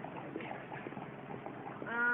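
Background murmur of indistinct voices in a public space, with scattered light taps and clicks. Just before the end, a held hesitation sound ('um') from a woman's voice begins.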